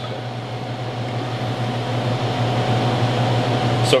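Beer being poured from a bottle into a tasting glass, a steady rushing fizz that grows slightly louder, over a constant low hum.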